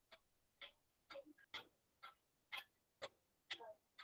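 Faint, evenly spaced ticking, about two ticks a second, like a clock, over near silence.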